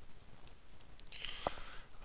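A few sharp computer mouse clicks, a second or so apart, as on-screen buttons are clicked to open the image upload dialog.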